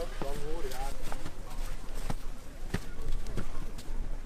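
Indistinct voices at first, then several sharp knocks spaced about half a second to a second apart over a low outdoor rumble.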